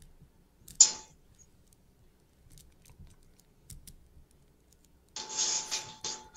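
Kitchen handling sounds at a stovetop pan: a sharp metal-utensil scrape about a second in and a few faint clicks, then a longer rubbing near the end as hands are wiped on a cloth.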